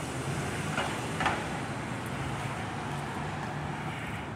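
City street traffic: a steady low hum of vehicle engines over road noise, with two short sharper sounds about a second in.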